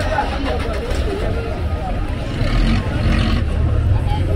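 Busy street ambience: many voices of passers-by chattering, over the steady low rumble of a minibus engine running close by.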